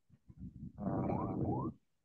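A man's voice making a drawn-out hesitation sound, like a long 'uhh', lasting about a second in a pause between sentences.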